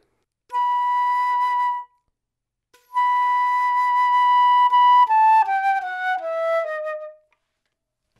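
Concert flute playing a soft B, started cleanly by releasing the tongue against air already prepared, the way to begin a note without cracking it. The note is held about a second and a half, then started again and held about two seconds before the flute steps down through about five shorter notes and stops.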